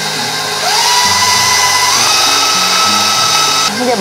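KitchenAid Professional 600 stand mixer motor beating cream cheese cheesecake batter. Its whine rises as the speed is turned up about half a second in, steps higher again around two seconds, then cuts off just before the end.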